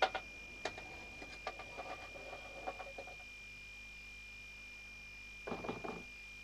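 Irregular knocks and clicks over the first three seconds, then only a faint hiss with a steady thin high tone underneath; a short rustling burst near the end.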